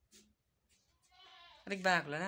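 A person's voice with a wavering, quavering pitch, starting loudly near the end after a second and a half of near quiet.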